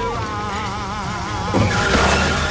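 Car tyres squealing on asphalt as a car spins, getting louder near the end, with a song playing over it.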